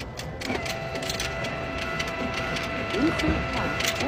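Self-checkout kiosk's banknote acceptor pulling in paper bills: a steady motor whine starts about half a second in, with repeated clicks as the notes are fed through.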